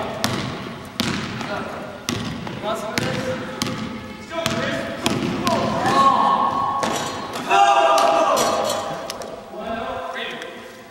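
A basketball dribbled on a hardwood gym floor, bouncing repeatedly about once or twice a second, with young men shouting during play in the second half.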